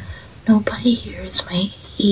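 Speech only: a voice speaking in a whisper.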